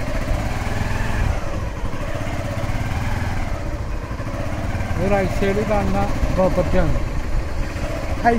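Motorcycle engine running steadily with a low rumble. A voice comes in about five seconds in.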